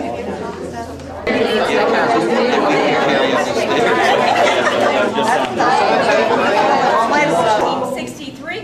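Chatter: a group of people talking over one another, louder from about a second in.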